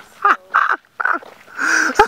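Loud laughter in four high-pitched bursts.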